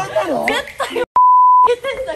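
A steady single-tone censor bleep, about half a second long and starting about a second in, dropped over a spoken word to mask it; it is louder than the speech around it.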